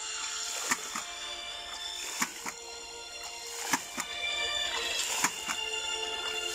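Background music with steady held tones, over sharp irregular clacks of a hydraulic ram pump's waste valves slamming shut as water spurts out of them.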